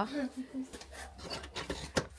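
Quiet scuffing footsteps and rustling as someone climbs tiled steps to a wooden front door, ending in a short sharp click of the door handle being tried.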